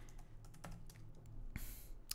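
Faint typing on a computer keyboard: a few soft key clicks, with a brief hiss near the end.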